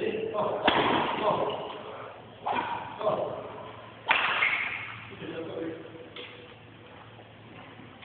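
Badminton racket smashing shuttlecocks: about five sharp cracks that ring on in a large hall, the loudest about a second in and about four seconds in.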